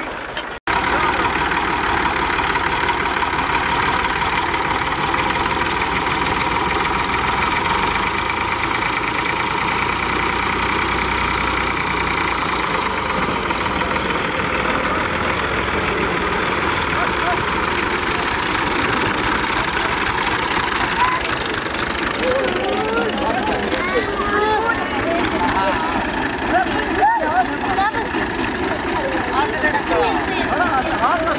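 Tractor engines running steadily under load while a tractor bogged in mud is pulled free, with people's voices calling over them in the last third.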